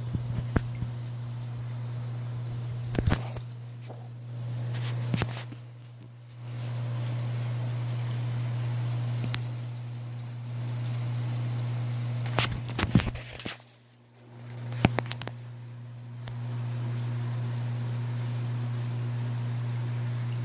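Steady low electrical hum of reef aquarium equipment, with all water flow switched off except the return pump. A few light clicks and knocks are heard, and the hum dips briefly twice.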